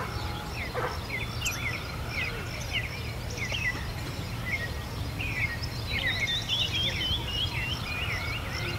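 Several songbirds chirping and singing in quick short notes, with a buzzy trill joining in after about five seconds, over a low steady rumble of outdoor noise.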